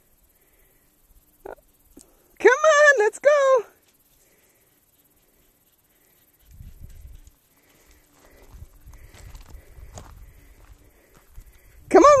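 A man's high, drawn-out call to a dog, three quick calls about two and a half seconds in, then faint footsteps on a gravel track from about six seconds in.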